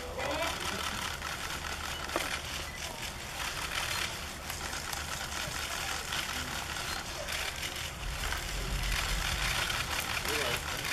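Busy press-room din: murmuring voices with many quick camera shutter clicks going off during a photo call, over a low steady hum.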